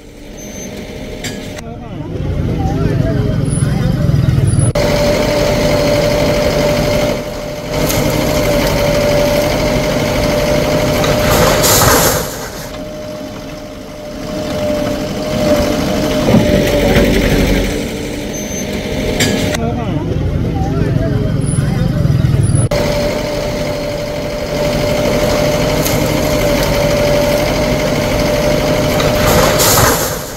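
Bulldozer engine running steadily under load while demolishing a house, with a steady whine and brief louder surges about twelve seconds in and again near the end. The same stretch of sound plays twice.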